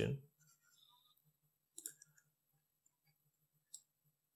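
Two faint computer mouse clicks, about two seconds apart.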